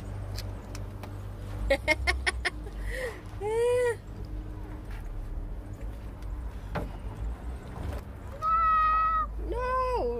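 A toddler's high-pitched wordless vocal sounds: a short rising-and-falling whine about three and a half seconds in, and a held squeal followed by another whine near the end. A few sharp taps come about two seconds in, over a steady low rumble.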